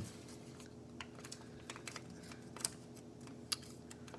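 A folded paper origami model being handled and pressed between the fingers: faint, scattered crinkles and small taps, a few sharper ones standing out. A steady low hum runs behind them.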